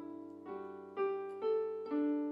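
Slow worship instrumental played with the piano voice of a Casio CTK-691 electronic keyboard: single notes struck about every half second from half a second in, each ringing on and fading, over a steady low tone.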